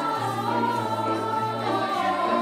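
Youth choir of mostly girls' voices singing a choral arrangement of a Lithuanian folk song in several parts, with low sustained piano notes underneath.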